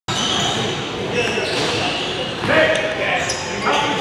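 A basketball bouncing on a hardwood gym floor amid the chatter of players and spectators, echoing in a large hall.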